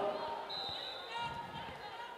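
A volleyball bounced several times on the indoor court floor by a server getting ready to serve, a short series of soft thuds.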